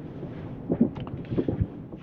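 Low, steady outdoor background noise with wind on the microphone, and a few faint soft knocks about a second in and again near the end.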